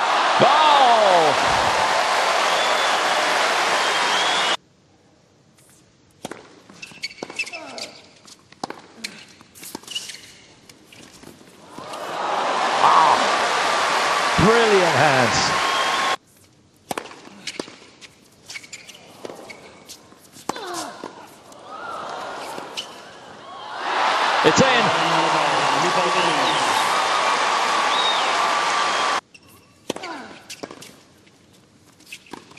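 Tennis stadium crowd cheering and applauding, with shouts rising out of it, in three loud stretches that each cut off suddenly at an edit. Between them, in quieter stretches, come sharp knocks of a tennis ball bouncing and being struck by rackets.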